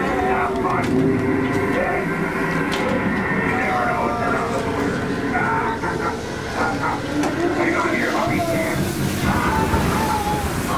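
Indistinct voices of a crowd of visitors moving through a haunted house, over a steady, dense background noise.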